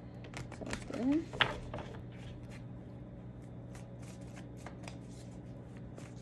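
A tarot deck being shuffled by hand: a run of quick, irregular card clicks and flicks.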